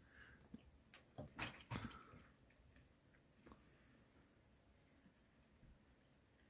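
Near silence, broken by a few faint clicks and smacks of chewing in the first two seconds and once more near the middle.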